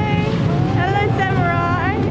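A high voice held on long, wavering notes that sweep upward near the end, over the low rumble of a boat's engine and rushing water.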